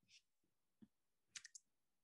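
Near silence, with a faint brief hiss at the start and a few faint sharp clicks about a second and a half in.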